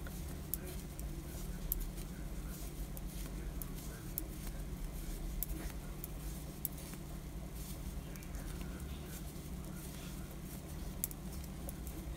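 Knitting needles clicking lightly and irregularly as a row of purl stitches is worked, over a steady low hum.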